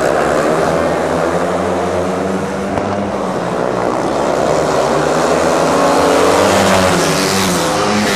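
Several 500cc single-cylinder speedway bike engines racing together, their pitch rising and falling as they rev through the turns, with one falling sweep near the end as a bike goes by.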